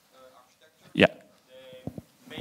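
Faint, distant speech of an audience member asking a question away from the microphone. About a second in, a loud, brief noise close to the microphone cuts across it, and a short click comes near the end.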